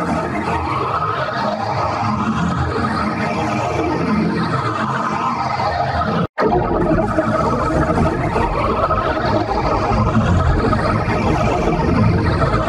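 Heavily distorted, effects-processed audio from a logo or advert edit: a dense, loud wash with no clear melody, cutting out briefly about six seconds in and then starting again.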